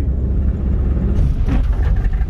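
Steady low rumble of a moving car's engine and tyres heard from inside the cabin.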